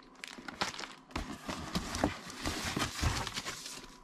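Packaging being handled: a foam-wrapped boombox rustling and crinkling against its cardboard box and polystyrene inserts as it is lifted out, with irregular small knocks. It is quieter for about the first second.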